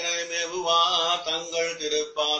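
A man's voice chanting a verse in a melodic recitation, the pitch rising and falling without break, over a faint steady low hum.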